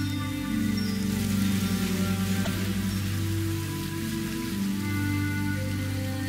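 Calm background music of long sustained tones, layered with a rain-like hiss that is strongest in the first half.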